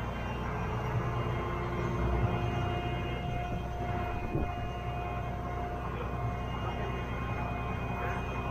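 Liebherr LTM1230-5.1 mobile crane's diesel engine running steadily, a constant low rumble with a steady whine over it.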